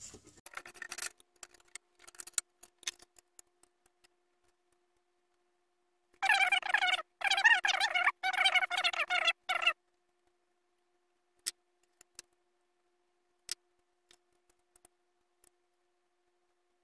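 Sped-up clicks and small metallic taps of hands changing a scroll saw blade at the blade clamps. A loud, high warbling chatter lasts about three seconds in the middle, and a faint steady hum runs underneath.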